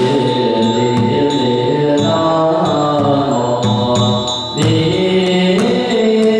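Buddhist liturgical chanting by a group of voices in unison, with slow, sustained, gliding notes. Strokes on a studded Chinese temple drum punctuate the chant, and a ringing bell tone fades out about a second in.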